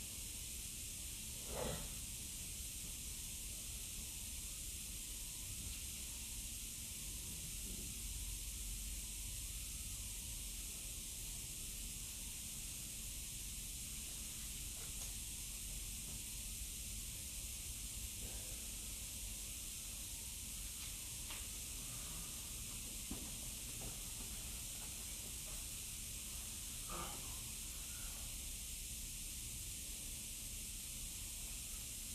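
Steady hiss with a faint low rumble: room tone. A faint short sound comes about two seconds in and another near the end.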